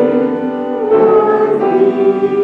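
Congregation singing a psalm tune in slow, held notes that change about a second in, with keyboard accompaniment.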